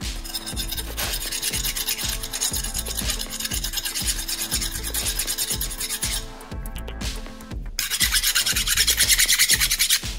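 A flat steel hand file rasping back and forth across a small smelted silver button in quick, even strokes. The filing pauses briefly about six seconds in, then resumes louder near the end.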